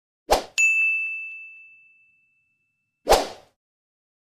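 Intro sound effects: a short noisy burst, then a bright bell-like ding that rings and fades over about a second and a half, then another short noisy burst about three seconds in.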